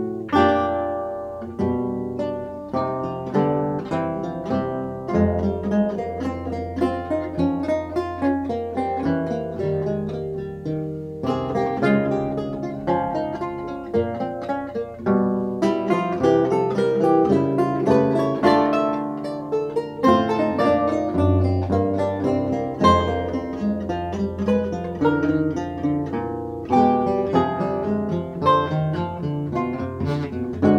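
Four Renaissance lutes of different sizes playing a four-part fugue together, plucked notes in interweaving lines with winding chromatic subjects.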